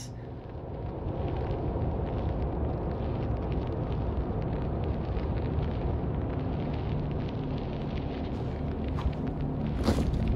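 A steady low rumbling noise that swells over the first second and then holds.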